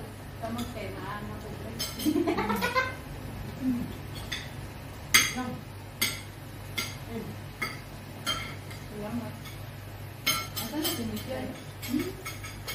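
Cutlery and plates clinking at a dinner table as people serve and eat: scattered sharp clinks, the loudest about five seconds in, over a steady low hum.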